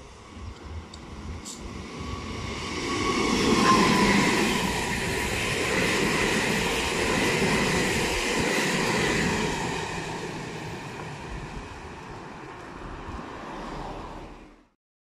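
A Meitetsu red-and-white electric multiple-unit train passing close by on the track. Its rumble grows over the first few seconds and is loudest with a brief high whine about four seconds in. It stays loud for several seconds, then fades as the cars move away.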